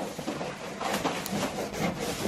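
Paper rustling and rubbing as a stack of greeting cards and craft papers is leafed through and handled.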